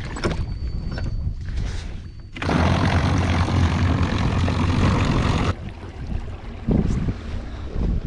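A small boat pushed along by an electric trolling motor: water wash and wind buffeting on the microphone, much louder from about two and a half to five and a half seconds in. A faint, thin, high steady tone sounds over the first two seconds.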